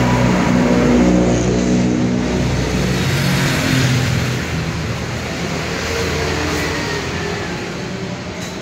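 A motor vehicle's engine passing close by in street traffic, loud for the first few seconds and then fading away, over a steady bed of traffic noise.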